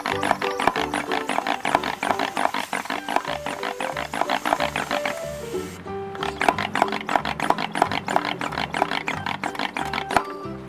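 Background music: an upbeat tune with a stepping bass line and a fast, even rhythm, which thins out briefly a little past halfway.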